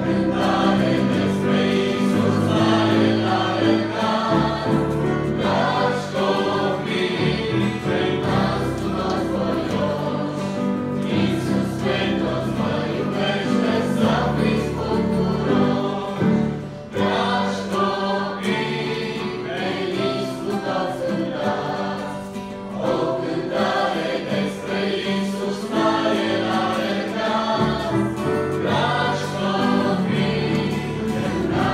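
A church choir singing a Romanian hymn over a steady low bass accompaniment, with a brief pause between phrases about halfway through.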